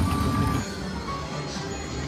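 Lightning Link Tiki Fire slot machine playing its electronic game music and sound effects, with short chime-like tones, as the reels settle on a small line win and spin again. It starts loud and eases off about half a second in.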